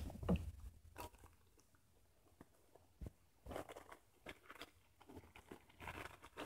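Faint, scattered clicks and rustles of hands setting down and picking up small packaged craft items.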